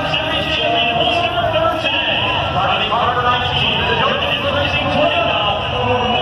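Indistinct speech over the steady din of a large crowd.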